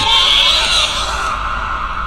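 A sudden, really loud, harsh high-pitched screech. It is strongest for the first second or so, then thins out and dies away near the end.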